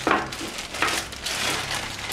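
Clear plastic bag crinkling and rustling as it is pulled off a camera hand grip, with a few sharper crackles.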